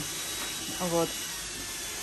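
Speech only: a woman says one short word over a steady background hiss.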